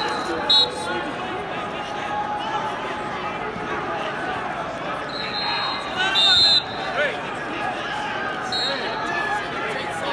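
Short, high referee-whistle blasts ringing over steady arena crowd chatter and shouting. There is one about half a second in, a louder pair around five and six seconds in, and another near nine seconds.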